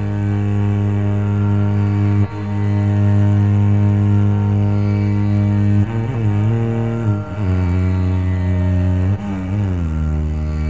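10-string double violin bowing a long, steady low note, then sliding and bending between pitches from about six seconds in, in ornamented slow phrasing in raga Abheri.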